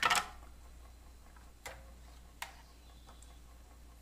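Plastic parts of a Bosch food processor being handled: a short clatter at the start, then two sharp clicks under a second apart as the slicing disc is lifted off the bowl's spindle.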